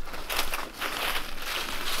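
Footsteps crunching through dry fallen leaves, an uneven rustling crunch with each step.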